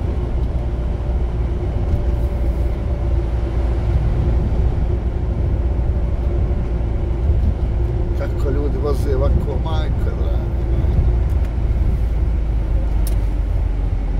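Truck cab interior on the move: a steady low drone of engine and tyres on a wet road, with a constant hum from the drivetrain.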